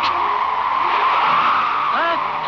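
Sound-effect blast of wind: a rushing whoosh that starts suddenly and holds steady, with orchestral music faintly underneath.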